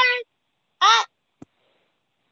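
A woman's long, high, shrill vocal cry breaks off just after the start, followed about a second in by a second short, shrill shout that rises and falls in pitch, then a single small click.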